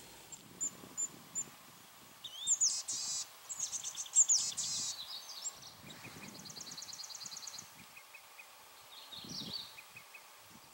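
Boreal forest songbirds singing: an olive-sided flycatcher together with a yellow-bellied flycatcher. Faint high chips come first, then high whistled, sweeping phrases and a rapid high trill in the middle, and a short phrase near the end.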